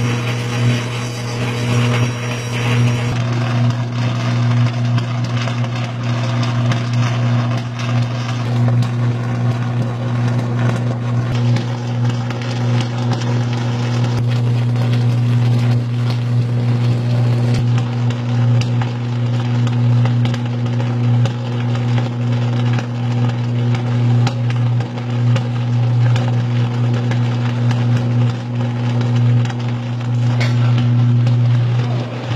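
High-voltage electrical arc on overhead power distribution lines: a loud, steady low buzz with crackling over it. It is a fault arc from an overloaded line.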